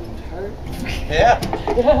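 People's voices, with a laugh near the end.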